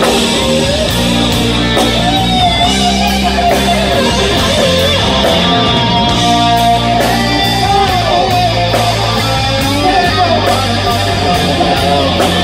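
Rock band playing live, with an electric lead guitar playing a melody with bends and vibrato over bass, chords and drums. A cymbal keeps a steady beat of about two strokes a second.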